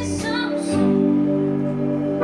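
Live band music: a woman's sung phrase ends about half a second in, then the band holds sustained chords over a steady bass.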